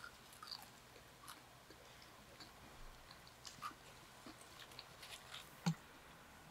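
Close-miked chewing of a burger: faint, wet mouth clicks and crackles, with a sharper knock just before the end.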